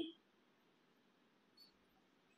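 Near silence: a pause in a man's speech, with only faint background hiss.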